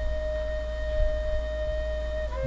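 A single drone note held steady in pitch, with a low hum underneath. The note shifts slightly lower near the end and then stops.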